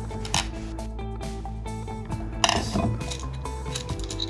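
Background music with steady held tones, over a few light clicks of a screwdriver and nut driver tightening a screw and lock nut on a plastic VEX wheel-and-gear assembly, one near the start and a sharper one past the middle.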